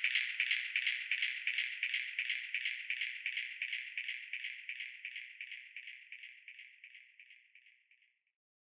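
Outro of an electronic dance track: a lone shaker-like percussion loop in a steady, even rhythm, with no bass or other instruments, fading out gradually to silence at the very end.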